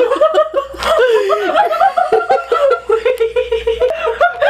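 A person laughing hard and without a break, in quick repeated bursts of laughter.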